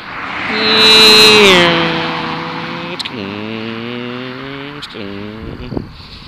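A car passes close by on the road. Its noise swells to a peak about a second in and then fades, and its droning tone drops in pitch as it goes past. Long droning tones with short breaks follow.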